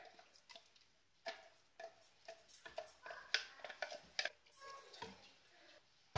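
Wooden spoon scraping and knocking thick paste out of a steel mixer-grinder jar into a steel pressure cooker: a string of faint, irregular clicks and knocks, a few with a brief metallic ring.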